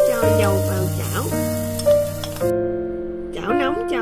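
Minced shallots, garlic, lemongrass and ginger sizzling as they hit hot oil in a stainless steel pot; the sizzle cuts off suddenly about two and a half seconds in. Background keyboard music plays throughout and is the louder sound.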